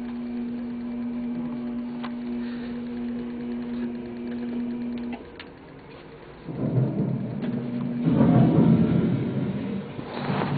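A steady low hum for about five seconds, then thunder rumbling loudly twice in the second half, from a haunted-house sound-effects track.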